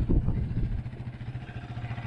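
Yamaha Raptor sport quad's single-cylinder engine idling with a steady, even pulse, after a brief louder burst just after the start.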